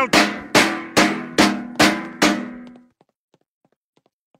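Wooden spoon banging on a metal trash can: six quick ringing strikes, about two and a half a second, that stop before the three-second mark.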